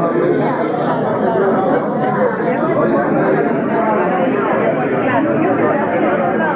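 Many people talking at once: the steady chatter of a crowded room full of overlapping conversations.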